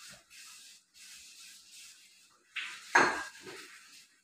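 Cookware clattering on a gas stovetop as pots are handled, with a small clink at the start and one sharp, loud clank about three seconds in.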